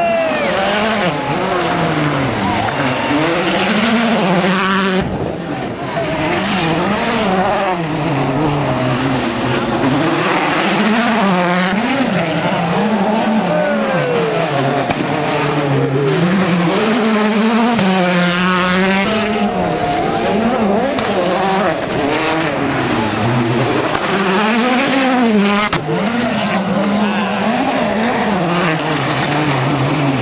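World Rally Car engines, 1.6-litre turbocharged four-cylinders, revving hard with the pitch climbing and dropping through gear changes as the cars drive through a watersplash, over a hiss of spray. Several cars are heard in turn, the sound changing abruptly every few seconds.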